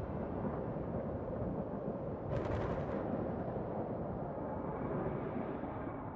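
Thunder rumbling low and steadily, with one sharper crackle about two and a half seconds in.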